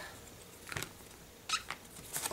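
Faint, brief rubbing sounds of a clear stamp being wiped clean after inking: two short scrapes, about three quarters of a second and a second and a half in, in an otherwise quiet stretch.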